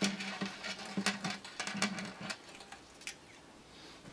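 Acoustic guitar strings and bridge pins being handled at the bridge: a quick run of small clicks and scrapes as the string ends and pins are pulled out, with a string ringing low underneath. The clicks and the tone stop a little over two seconds in, and one last click comes near three seconds.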